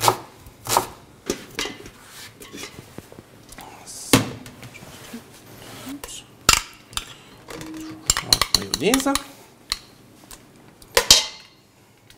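A knife chopping on a plastic cutting board at first, then a metal spoon clinking and scraping against a stainless steel mixing bowl and a glass dish as diced onion and mayonnaise are spooned in. Irregular sharp knocks and clinks, a few louder ones standing out about four, six and eleven seconds in.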